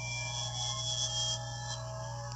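Reversed audio of a video played backwards through a handheld console's small speaker: several held tones at different pitches, overlapping and dropping out one after another, over hiss and a steady low hum.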